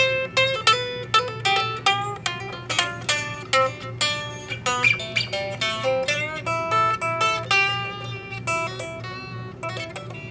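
Jay Turser Les Paul-style electric guitar being played: a quick run of picked single notes mixed with a few chords, several notes a second.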